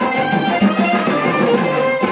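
Live traditional Telugu devotional bhajan music accompanying a group dance: held melody notes over percussion, loud and continuous.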